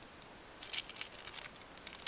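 Faint crinkling of small clear plastic bead bags being handled, a few soft scattered crackles from just under a second in.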